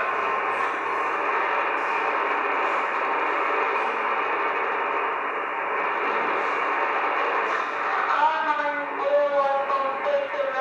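Shortwave amateur transceiver's speaker hissing with steady band static, its audio cut off at the narrow width of a single-sideband voice channel. About eight seconds in, faint speech from the radio comes up through the noise.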